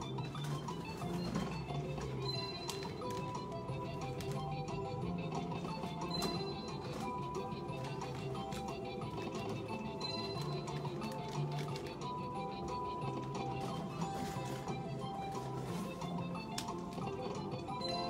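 Electronic game music from a Pennsylvania Skill gaming machine: a steady looping tune with short chimes and clicks as the reels play through a run of bonus spins.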